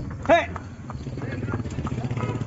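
Horse's hooves clip-clopping on the road as it pulls a tonga, with a low, steady rumble underneath.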